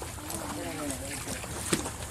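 Shallow pond water sloshing as men wade and handle a basin and a box of freshly harvested milkfish, with a faint voice in the background and one short knock near the end.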